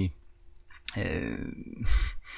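A man's audible breath between sentences into a close microphone. It begins with a mouth click about a second in, and a low thump on the microphone comes near the end.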